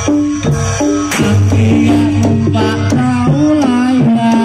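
Live gamelan music of the kind that accompanies Barongan: tuned metal percussion playing a melody in stepped, held notes over sharp hand-drum strokes.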